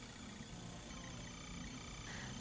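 Faint, steady room tone and recording hiss, with no distinct sound event.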